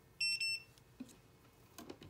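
Two short, high electronic beeps back to back, typical of a nail curing lamp's timer ending its cycle. They are followed by a single click and a few light taps near the end.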